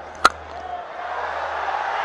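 A single sharp crack of a cricket bat hitting the ball, followed by a stadium crowd whose noise builds steadily as the ball goes up in the air.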